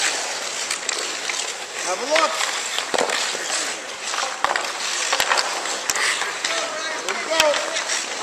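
Hockey skates scraping and carving on outdoor rink ice, with several sharp clacks of sticks and puck and shouting voices in the background.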